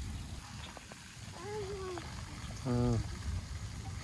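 A small child's short wordless vocalization, wavering in pitch, about a second and a half in, then a brief low hum-like voice sound near three seconds, the loudest moment, over a steady low rumble of wind on the microphone.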